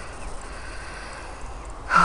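Steady outdoor background noise on the camera's microphone, then near the end a loud breathy sigh from the person filming.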